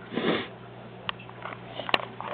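One short sniff near the microphone just after the start, followed by a few faint clicks.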